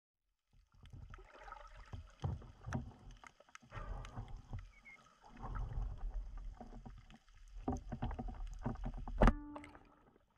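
Underwater sound of a diver moving: water washing over the camera housing, with scattered clicks and low rumbles. About nine seconds in, a sharp loud crack with a brief ring as the speargun fires.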